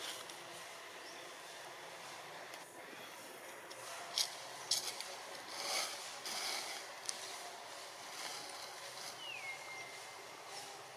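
Steady outdoor background noise, with a few brief clicks and rustles in the middle and, near the end, a short high call that falls in pitch and then holds steady.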